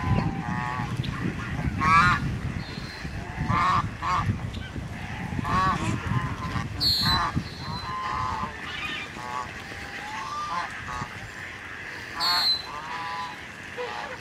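A flock of Canada geese honking repeatedly, one short call after another every second or two, with two louder, higher-pitched calls about halfway through and near the end. A low rumble sits under the first half.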